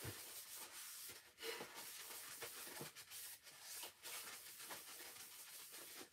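Faint, scattered rustling and light handling noises from someone moving things by hand, over quiet room tone.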